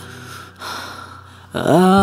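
A male singer's audible intake of breath in a pause between sung lines, over a soft, sustained musical backing. About one and a half seconds in, his voice comes back in on a note that rises in pitch.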